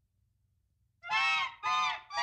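Donald Duck's squawking cartoon voice: two loud, nasal, honk-like squawks, about half a second each, beginning about a second in after a near-silent moment.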